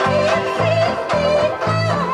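Several banjo ukuleles strummed together in a steady rhythm while a woman sings a loud, wavering melody line over them, with other voices joining in.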